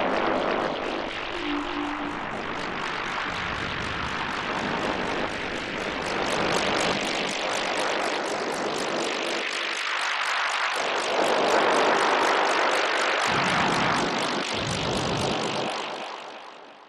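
Alesis Fusion synthesizer playing a noise-based effect patch: dense noise with a fast flutter, like a propeller aircraft, its tone shifting slowly and swelling loudest in the second half before starting to fade near the end. The last sustained notes of the preceding music die away in the first two seconds.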